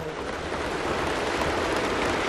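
Members of parliament applauding by thumping on their desks, a dense, steady clatter.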